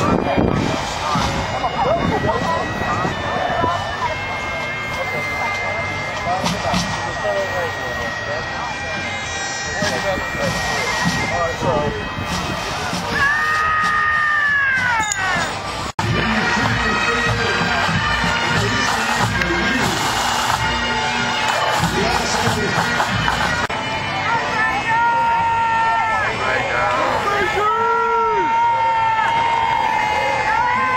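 Bagpipe music playing under a steady murmur of crowd chatter, with a brief dropout about halfway through.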